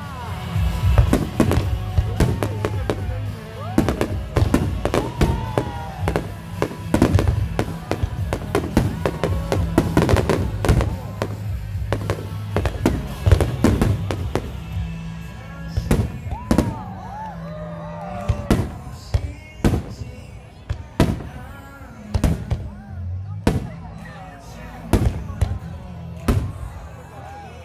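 Fireworks display: aerial shells bursting in a rapid string of bangs and crackles, packed close together for the first half and more spaced out later, with music and crowd voices underneath.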